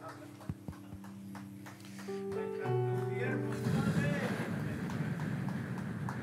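Soft, sustained keyboard chords playing, moving to a new chord about two seconds in, with a few small clicks in the first second. From about halfway through, uneven breath noise comes close on a handheld microphone as a man struggles to compose himself before speaking.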